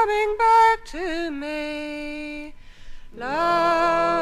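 Unaccompanied English folk singing by a female voice: a phrase ends, a long note is held, then after a short breath about two and a half seconds in the singing resumes with an upward slide into the next phrase.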